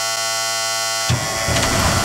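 Low-air-pressure warning buzzer of an M35A2 deuce-and-a-half sounding steadily, showing no pressure yet in the air brake system. About a second in, the starter cranks the truck's warm turbocharged inline-six multifuel engine, which catches within half a second and settles into running.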